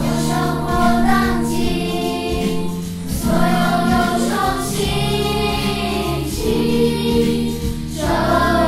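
Group of children singing a light, upbeat Mandarin song in unison over an instrumental backing track.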